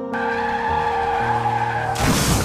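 Vehicle tyres skidding, a sound effect that comes in just after the start over soft background music.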